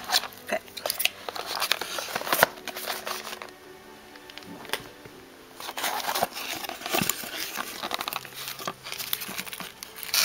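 Scissors snipping through a cardboard box's edge, with cardboard and paper crinkling and rustling as the lid is worked open. Soft background music plays under it.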